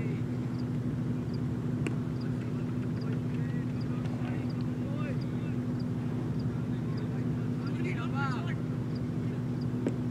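A steady low mechanical drone, like a running engine, hums throughout. Faint distant shouts from players come about eight seconds in, and a sharp knock follows just before the end.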